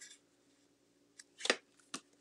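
A few short, soft rustles of paper and cardstock being handled on a tabletop, the loudest about one and a half seconds in.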